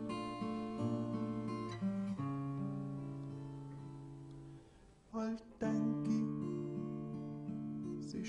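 Solo acoustic guitar playing chords between sung verses. Near the middle one chord is left to ring and fade away, then a short chord sounds and the playing picks up again.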